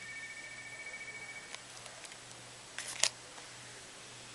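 A faint steady two-note electronic tone lasts about a second and a half and stops with a soft click. A little before three seconds in comes a sharp double click, the loudest sound.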